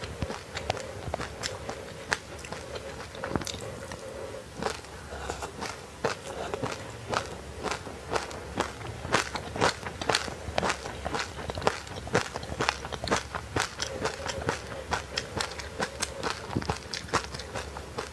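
Close-miked chewing of a frozen passionfruit coated in black and white sesame seeds: a fast, irregular run of crisp crunches and crackles.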